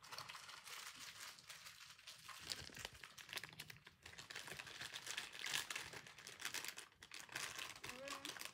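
A wrapper being crinkled and crumpled by hand, a continuous fine crackling that gets busier about two and a half seconds in.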